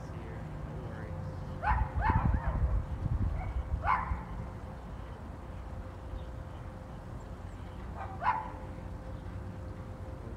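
A dog barking: four short barks, two close together about two seconds in, another a couple of seconds later and a last one after eight seconds. Wind rumbles on the microphone during the first barks.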